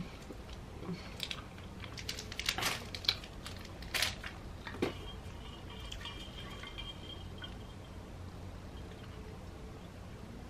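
Sparse crinkles and clicks from a plastic snack wrapper being handled while eating a cookie, mostly in the first half.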